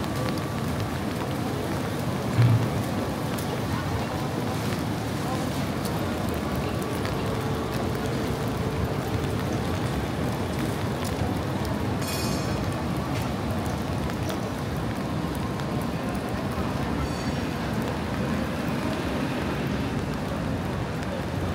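Steady rain falling on a wet city street, with people talking nearby. There is a single low thump about two and a half seconds in.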